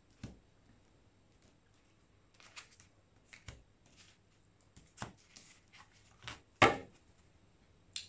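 Soft taps and knocks of a tarot deck being cut into piles, set down and gathered back up on a tabletop, with one sharper knock about two-thirds of the way through.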